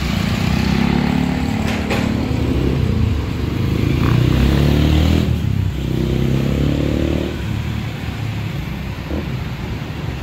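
Street traffic: the engines of passing cars and motorcycles, their engine notes rising and falling as they go by. The loudest pass comes about four to five seconds in.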